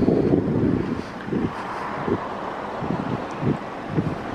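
Wind buffeting the microphone as a steady low rumble, strongest in the first second, with soft footsteps on asphalt about every 0.7 s.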